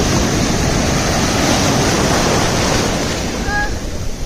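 Sea waves breaking and surf washing in close to the microphone: a loud, steady rush of water that eases off near the end.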